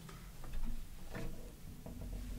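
Faint scattered knocks and clicks of acoustic guitars being handled on wall hangers as one is hung up and another taken down.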